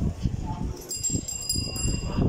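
A small metal bell rings once about a second in, a bright ring of several high tones that lingers for about a second.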